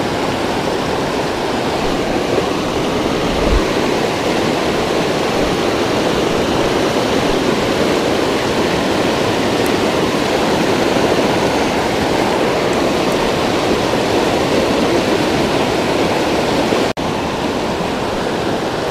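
Fast mountain river rushing steadily over rocky rapids, a constant whitewater roar that cuts out for an instant near the end.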